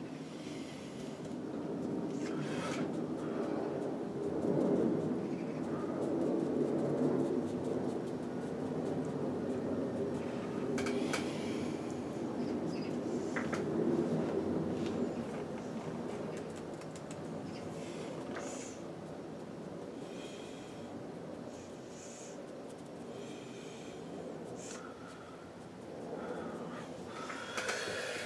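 Dry bristle brush stroked across smooth hot-pressed watercolour paper, short scratchy strokes that come and go, over a continuous low background sound.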